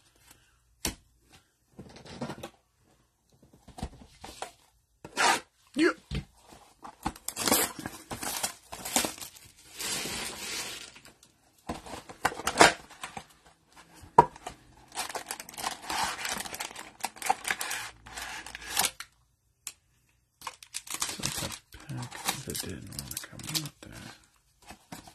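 Plastic shrink-wrap and the cardboard of a Panini Prizm football blaster box being torn open by hand, in irregular bursts of tearing and crinkling with short pauses.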